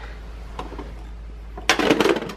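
Near the end, a short burst of hard-plastic clattering from a Bruder toy garbage truck as its hand lever tips the plastic rear bin up; before that, only faint room noise.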